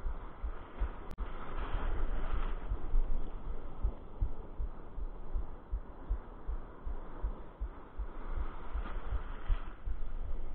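Muffled, irregular low thumping from wind and handling knocks on a low-mounted camera's microphone, over the wash of breaking surf that swells up twice. A single sharp click about a second in.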